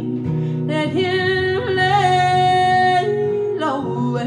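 A woman singing long held notes over a strummed acoustic guitar, one note held steady for about a second near the middle.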